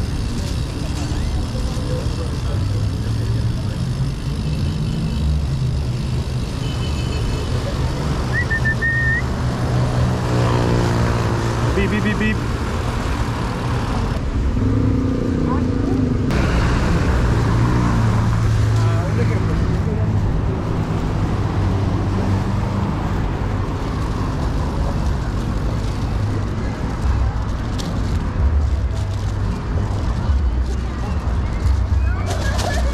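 Riding noise from a BMX bike on paved city streets: a steady low rumble of wind and tyres, with road traffic and people's voices in the background.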